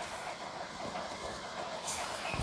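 Faint rustle of saree cloth as it is smoothed flat and folded by hand on a counter, with a brief brighter swish near the end.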